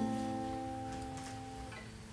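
Strummed acoustic guitar chord ringing out and slowly fading between sung lines.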